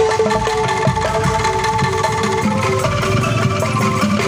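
Angklung ensemble music: bamboo angklung tubes shaken to hold quivering notes of a tune, over a steady beat of low notes and short knocks.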